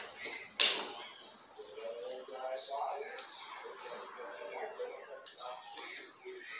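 A single sharp metal click about half a second in, from locking pliers gripping the top cap of a bicycle suspension fork, with a couple of lighter handling clicks near the end.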